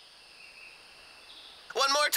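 Faint forest ambience with soft high chirping in a cartoon soundtrack; near the end a loud, high, wavering call cuts in.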